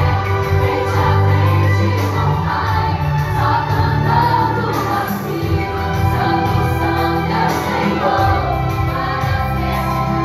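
Christian worship song: young female voices singing together into a microphone over backing music with a steady bass line.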